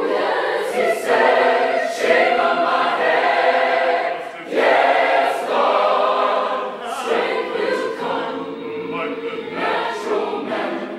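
Large mixed choir singing a gospel spiritual a cappella in full harmony, loud, with a brief break about four seconds in.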